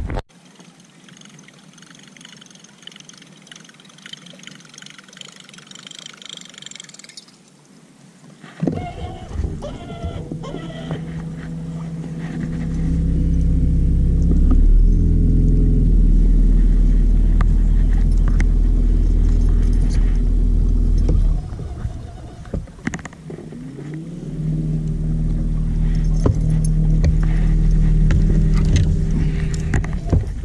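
Boat motor starting up about nine seconds in and rising in pitch as it is throttled up, then running loud and steady. It eases off briefly a little past twenty seconds, then is throttled up again with a rising whine. The first eight seconds are much quieter.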